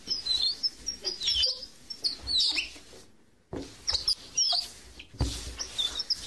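Birds chirping: short, repeated high chirps that come in clusters, broken by a moment of dead silence about halfway through.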